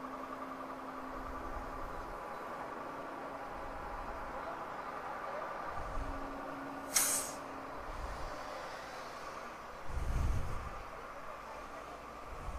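Steady low hum with a brief, sharp hiss of air about seven seconds in, as the motorcycle's rear tyre valve is handled, and a dull thump near ten seconds.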